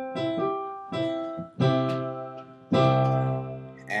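GarageBand's Grand Piano software instrument sounding a few notes and chords played live from a digital keyboard over a USB MIDI cable: about five separate strikes, each ringing and fading. It is a test showing that the MIDI connection works.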